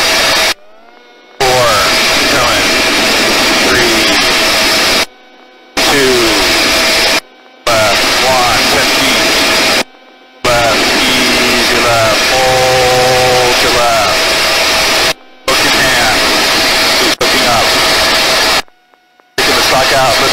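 Loud, steady helicopter engine and rotor noise heard through the crew's intercom feed during a hoist. The sound cuts out abruptly six times, each for under a second.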